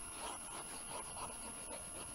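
Stylus rubbing back and forth on a tablet screen while erasing handwriting: soft, scratchy strokes, a few a second.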